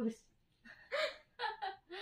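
A person's voice in short gasping exclamations: three brief vocal bursts with falling pitch, about half a second apart.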